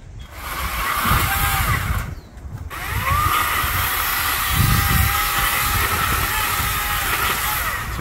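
Two-stroke petrol chainsaw running at high revs. It drops off briefly about two seconds in, then revs up again and runs on steadily.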